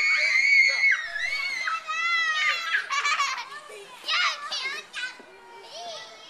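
Young children shrieking and calling out at play, in high-pitched voices. They are loudest in the first second and grow fainter toward the end.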